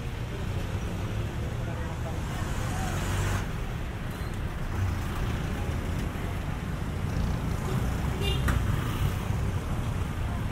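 Busy street traffic: a steady low engine rumble from motor scooters and other vehicles passing close by, swelling as one goes past about three seconds in.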